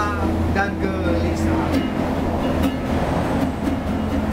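Steady low rumble of road traffic passing beneath, with a brief sung phrase in the first second and a few sparse plucked notes on a small acoustic guitar.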